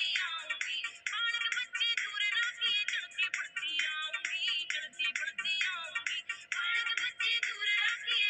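Haryanvi folk song playing: a singing voice over music, with little bass.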